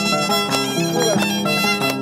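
A bowed violin playing a melody over a plucked harp accompaniment, the harp's notes striking at a regular beat: Andean harp-and-violin music.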